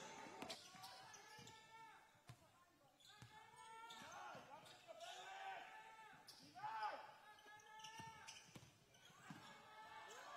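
A basketball being dribbled on a hardwood court, heard as repeated bounces, with players' voices calling out across a large hall. The whole is quiet.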